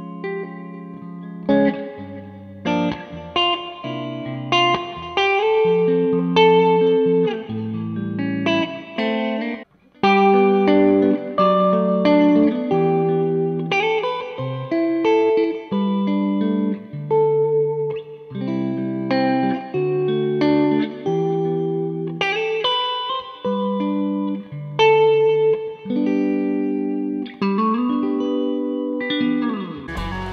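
Gibson Murphy Lab '56 Les Paul reissue with P90 pickups, on the middle setting with both pickups on, played through a Marshall Silver Jubilee amp: a picked phrase of chords and single notes. There is a short break about ten seconds in and a note bent upward near the end.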